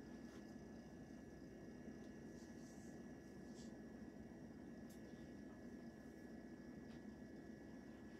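Near silence: room tone with a faint steady hum.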